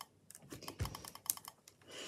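Butter slime being pressed and spread flat on a tabletop with the fingertips, giving a quick run of small sticky clicks and pops, with one soft low thump near the middle.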